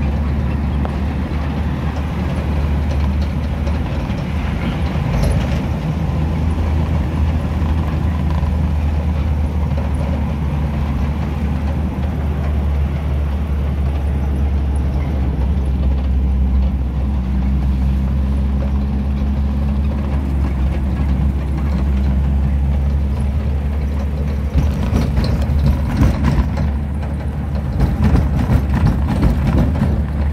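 Car engine and road noise heard from inside the cabin while driving: a steady low drone. There are a few sharp knocks near the end.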